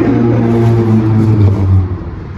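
A motor vehicle engine running with a steady low hum, its pitch dropping slightly and the sound fading near the end.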